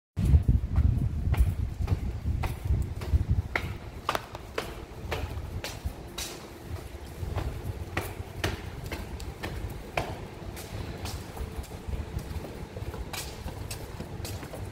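Footsteps on a concrete parking-garage floor at a steady walking pace, about two steps a second, over a low rumble that is strongest in the first few seconds.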